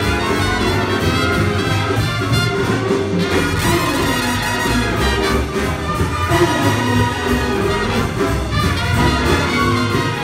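Jazz big band playing live, with saxophones, trumpets and trombones sounding together in a continuous full-ensemble passage.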